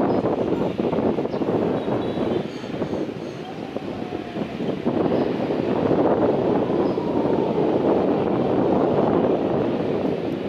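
Airbus A321-211's CFM56 turbofan engines roaring through touchdown and rollout, louder from about five seconds in, with wind buffeting the microphone.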